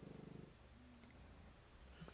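Near silence: room tone, with a faint low buzzing pulse in the first half second.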